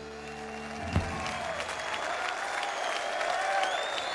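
A band's held final chord stops with a thump about a second in. A studio audience applauds after it.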